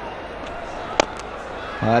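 Cricket bat striking the ball, a single sharp crack about a second in, over steady background noise from the stadium crowd.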